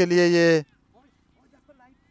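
A man's commentary voice holding one drawn-out word for about half a second, then near silence for the rest.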